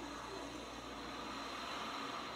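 Faint, steady ambient hiss with a low hum from the music video's cinematic intro, before the song begins.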